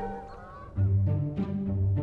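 Geese honking in the first second, over trailer music whose low bass notes and light mallet melody come back in just under a second in.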